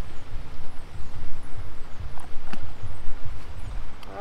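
Wind buffeting the microphone in an uneven low rumble, with one sharp click about two and a half seconds in.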